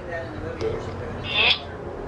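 Spirit box app (Necrophonic) output: faint, broken voice-like fragments over hiss, with a short rising voice-like sweep about a second and a half in.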